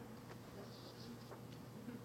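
Faint room tone with a steady low electrical hum and a couple of soft clicks near the end.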